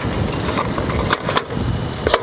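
Coins clinking as change is scooped by hand from a vending machine's plastic coin-return cup, a few sharp clicks a little after a second in, over a steady low rumble.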